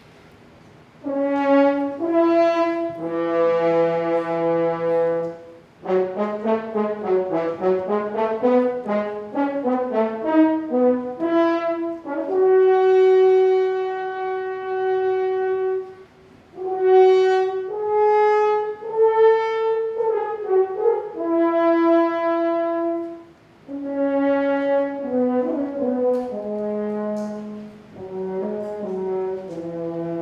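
French horns playing a loud melody in unison, entering about a second in out of silence, in phrases of long held notes and moving runs with brief breaks between them.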